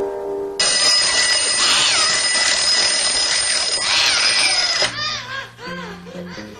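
Alarm clock bell ringing hard and continuously for about four seconds, starting just after a short xylophone-like tune ends and cutting off abruptly; a few short swooping tones follow near the end.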